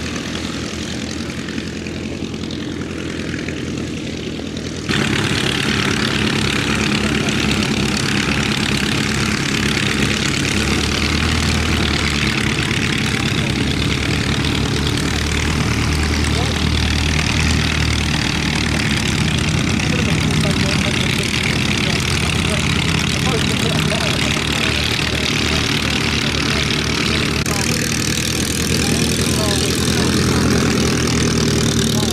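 Vintage biplane piston engines ticking over at taxi power, propellers turning, a steady engine note that steps louder about five seconds in.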